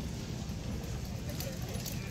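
Steady low background rumble of an open-air market, with faint voices of other people in the distance.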